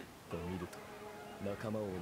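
A low man's voice speaking quietly in two short phrases, about half a second in and again near the end: Japanese dialogue from the anime episode.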